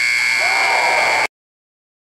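Basketball scoreboard buzzer sounding one long steady electronic tone, which cuts off suddenly about a second and a quarter in.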